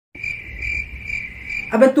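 Cricket chirping: a steady high trill that swells about twice a second.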